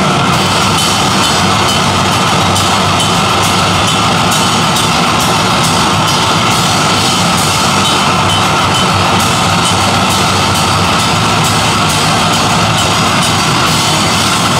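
A heavy band playing live at full volume: a drum kit pounding out fast, continuous hits and cymbals under electric guitars, with no pause.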